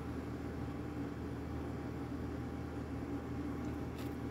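Steady low hum with a faint even hiss: room tone, with no distinct event.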